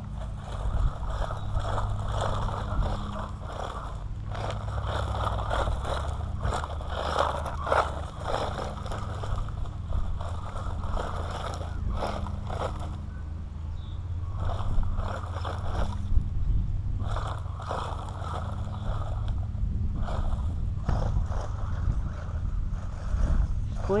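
Small electric RC truck driving over dirt, gravel and grass, its running noise coming and going, over a steady low hum.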